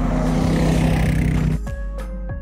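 Background music with a side-by-side utility vehicle driving on a gravel road; the engine and tyre noise swells and then stops abruptly about one and a half seconds in.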